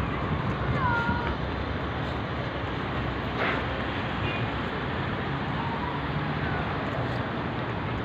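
Steady outdoor background noise of a busy open courtyard, with a short high gliding call, meow-like, about a second in.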